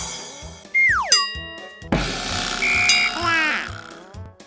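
Cartoon sound effects over a children's music track. About a second in comes a falling whistle-like glide, followed by a ringing chime. From about two seconds in there is a rushing cascade as cartoon balls pour into a wagon, ending in a quick run of falling chirps.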